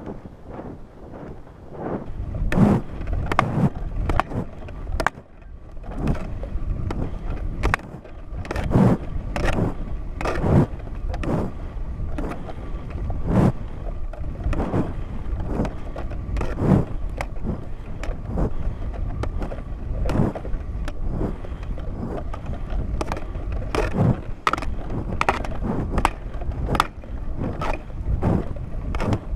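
Wind buffeting the microphone of a high-altitude balloon payload's onboard camera during the fall after the balloon burst, a low rumble that grows louder about two seconds in. Irregular knocks and scrapes from the jostled payload housing run through it.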